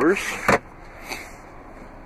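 Plastic slide-out drawer with cup holders in a car's rear console, pushed shut: a brief sliding rustle ending in one sharp click about half a second in, then a faint tick.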